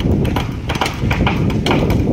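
Rapid, irregular sharp knocks and clacks of bamboo construction work, several a second, over a steady low rumble.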